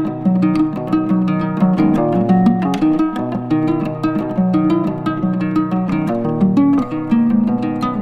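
Background music of quickly plucked string notes running on in an even, lilting pattern.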